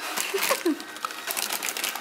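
Plastic candy-bag wrappers crinkling as they are handled and pushed into a plastic cauldron bowl, a rapid run of crackles. A couple of short falling pitched sounds come about half a second in.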